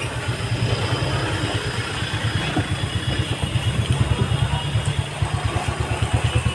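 A motor running steadily with a rapid low throb.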